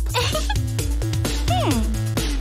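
Background music with steady held notes, and a brief voice sound gliding down in pitch about one and a half seconds in.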